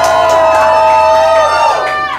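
Several voices singing one long held note together, slightly wavering, over acoustic guitar strumming: a small audience singing along with the song. The held note breaks off near the end.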